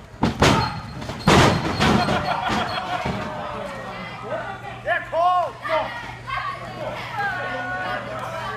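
Two loud impacts in a pro wrestling ring about a second apart, as blows land or a body hits the mat, the second ringing on for about a second. Shouting voices follow, echoing in a large hall.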